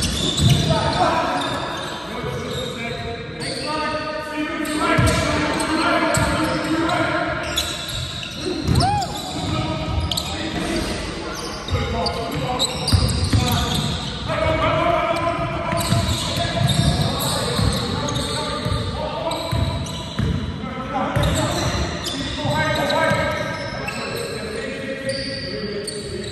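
Basketball game in an echoing sports hall: the ball bouncing repeatedly on the court while players call out to each other.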